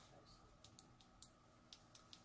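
Near silence with a handful of faint, sharp clicks spread irregularly through it.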